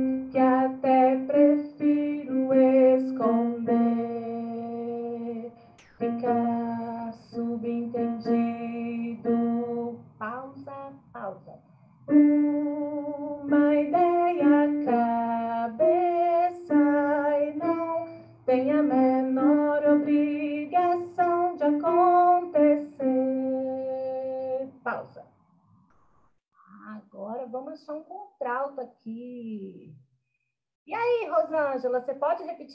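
A woman singing the contralto part of a choral arrangement, a single line of held and short notes with brief pauses between phrases, heard over a video call.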